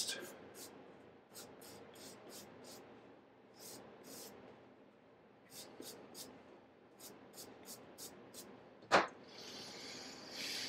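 Light brushing and rubbing strokes on a paperback book's cover and edges, cleaning off dust, in short quick runs, then a single knock near the end.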